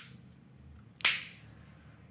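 Plastic key fob shell snapping shut as its two halves are squeezed together: one sharp click about a second in.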